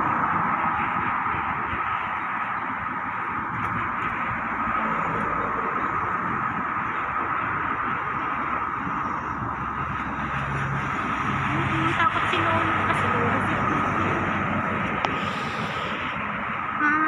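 Steady rush of road traffic from a busy multi-lane road beside the pavement.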